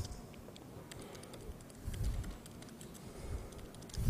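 Laptop keyboard typing: a faint, irregular run of light key clicks as terminal commands are entered.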